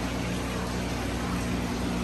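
Aquarium pumps and filters running in a room full of fish tanks: a steady electric hum under a constant hiss of moving water.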